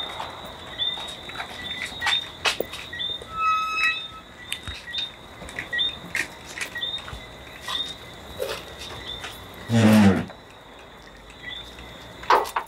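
High, short chirps from a night creature repeating about twice a second, with scattered footsteps and clicks on a tiled courtyard floor. A short loud sound about ten seconds in.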